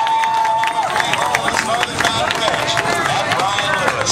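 Grandstand crowd at a chuckwagon race, cheering and shouting with scattered claps. One voice holds a long call that ends about a second in.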